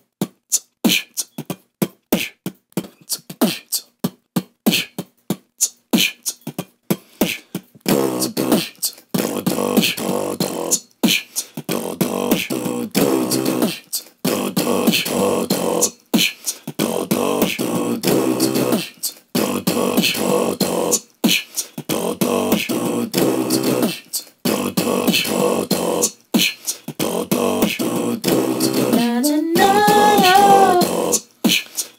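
Beatboxing into a phone's microphone: a beat of quick sharp clicks and hits, which about eight seconds in thickens into a fuller pattern repeating about every two seconds. Near the end a singing voice comes in over the beat.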